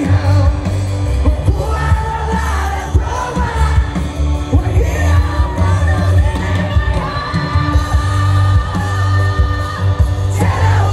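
Live concert music played loud, with a singer's voice over a heavy, steady bass.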